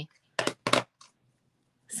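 Two short dry rustling strokes about a quarter second apart, then a faint third, from hands handling craft supplies on the desk.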